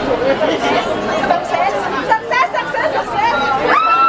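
A crowd of people chattering and calling out all at once, many voices overlapping. Near the end one high voice rises into a long held call.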